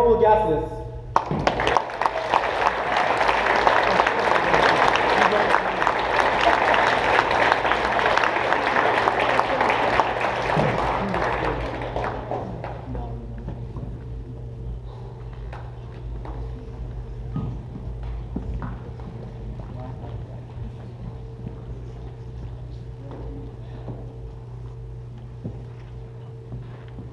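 An audience applauding in a large gymnasium hall for about ten seconds, then fading out. Afterward there are quiet room sounds with a faint steady hum and a few small knocks.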